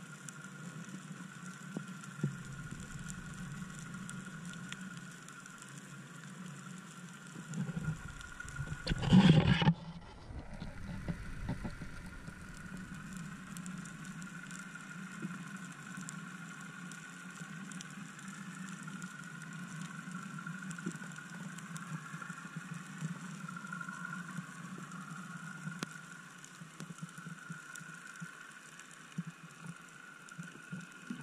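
Muffled underwater sound recorded through a camera in a waterproof housing while a spearfisher swims: a steady low hum and hiss, with a louder rush of water and splashing about eight to ten seconds in.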